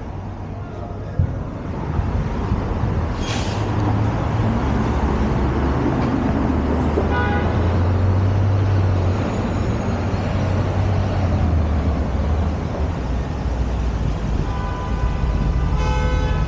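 City street traffic: a steady low rumble of passing cars that grows louder about two seconds in, with a brief hiss about three seconds in and a short car-horn toot about seven seconds in; another horn-like tone sounds near the end.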